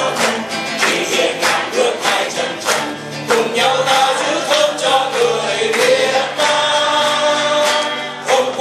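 A small group of men singing a song together in harmony to a strummed guitar, holding a long chord near the end.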